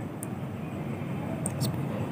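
Steady background noise, with a few faint clicks, one just after the start and two about a second and a half in.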